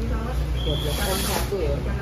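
Indistinct voices talking, with a brief hiss with a thin high tone about halfway through, over a steady low hum.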